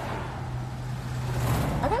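Car noise heard from inside the cabin: a steady low hum with a wash of road noise that swells about a second and a half in.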